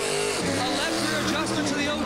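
Stock car V8 engine running on pit road during a fuel stop, its note falling briefly right at the start, with a commentator's voice over it.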